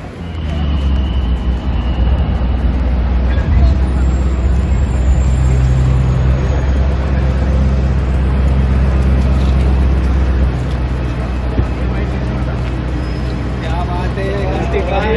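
Large SUV's engine idling close by: a steady low rumble, with voices of people around it in the background.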